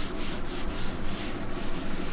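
Felt whiteboard eraser scrubbing a marker drawing off a whiteboard in quick back-and-forth strokes, about three a second.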